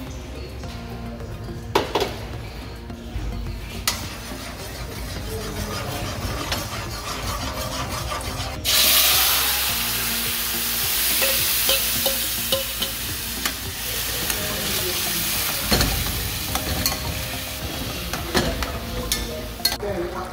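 Seasoned ground-beef mixture poured into hot oil in an aluminium pot, setting off a sudden loud sizzle a little before the halfway point. The sizzle carries on as the pot bubbles, with a few knocks of a utensil against the pot.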